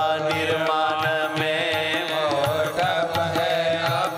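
A male voice sings a devotional kirtan line in long, gliding held notes, over instrumental accompaniment with a steady percussion beat.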